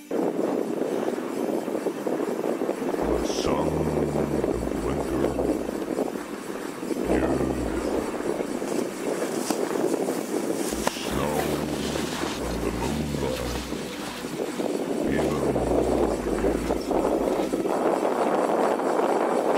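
Rushing wind on a moving camera's microphone, with the hiss and scrape of sliding down a snow-covered ski run and low buffeting rumbles that come and go. Faint voices rise above it now and then.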